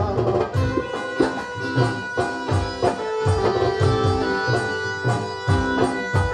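Live Bengali folk band playing an instrumental passage: a two-headed barrel drum beats a steady rhythm under a keyboard melody of long held notes, with electric bass.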